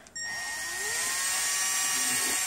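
Electric power drill starting up: its motor whine rises in pitch over the first second, then runs steadily at full speed with a high whine.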